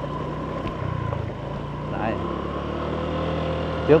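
Motorbike engine running steadily as the bike rides along a road, a low even hum under road noise.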